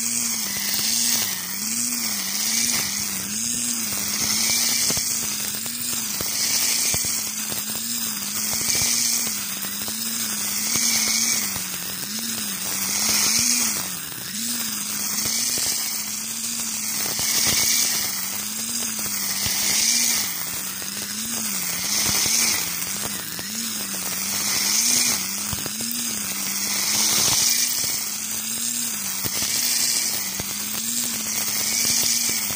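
Electric string trimmer with a triple nylon line cutting through dense barley and oat cover crop. Its motor hum wavers in pitch as the load changes, and the line's hiss through the stalks swells and fades with each side-to-side sweep, about every two seconds.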